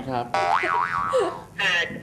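Comic boing sound effect: a springy pitched tone that starts suddenly about a third of a second in and wobbles up and down twice before dying away.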